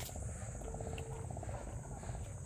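Night insects chirring: a steady high-pitched buzz, with a rapid pulsing trill lower down and a low rumble beneath. A brief steady note sounds about a second in.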